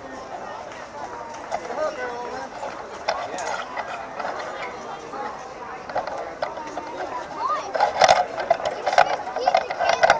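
Indistinct voices of people talking close by, louder near the end, with a couple of sharp knocks shortly before the end.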